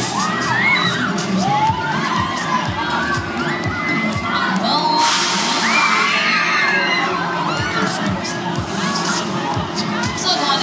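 Riders on a swinging fairground ride screaming and shouting, many voices rising and falling over one another. About halfway through, a hiss cuts in for a second or so.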